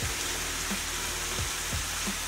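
Ground beef sizzling steadily in a frying pan on medium-high heat, with a few soft low thumps as handfuls of spinach are dropped into a blender jar.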